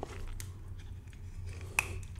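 Hinged back cover of an antique Hebdomas 8-day pocket watch being pried open with a fingernail: faint handling clicks, then one sharp click near the end as the cover snaps open.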